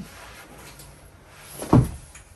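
A single short, loud clunk near the end from a plastic hand air pump as it is stood upright and its handle taken up, after a faint click at the start.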